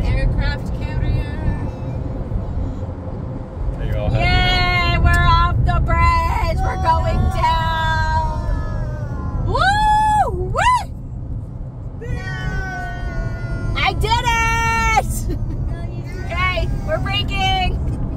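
High-pitched wordless voice sounds, long gliding squeals and held notes, over the steady road noise of a moving car heard from inside the cabin.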